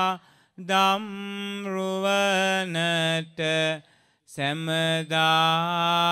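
A single voice chanting a Buddhist devotional chant in long, drawn-out notes with slight bends in pitch, pausing briefly for breath twice.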